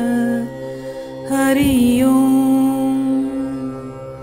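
Devotional mantra chanting over a steady drone: a voice sings a long held note starting about a second in, fading near the end.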